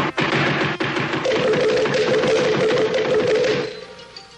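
Cartoon gunfire sound effect, a rapid run of shots mixed with music, stopping shortly before the end; a held tone comes in over it about a second in.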